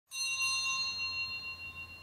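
A bell struck once near the start, its ring slowly fading away.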